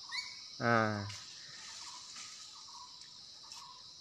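Steady high-pitched insect chorus in forest, with a man's brief voiced sound about half a second in.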